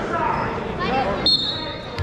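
Background voices echoing in a gym, then a short high-pitched squeal, a steady tone that cuts in sharply a little past halfway and fades before the end.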